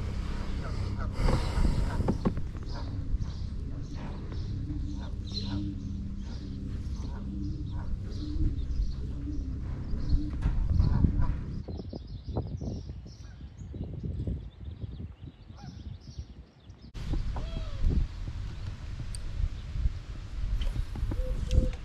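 Birds calling over and over, a rapid run of short calls that lasts through the first twelve seconds or so, then dies down.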